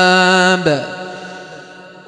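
A man's voice holding one long steady note of Quran recitation, the drawn-out end of a verse, which stops about half a second in and leaves an echo fading away.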